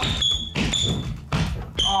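Clear rubber sole of a Nike GT Cut 3 basketball shoe squeaking as it is rubbed to test its grip, in three short high-pitched squeaks; the squeak is the sign of a grippy sole.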